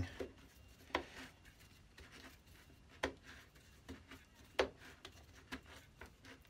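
Faint clicks and knocks of the stiff, part-seized fence of a Lewin combination plough plane being worked by hand along its rods. Three sharper clicks stand out, about one, three and four and a half seconds in.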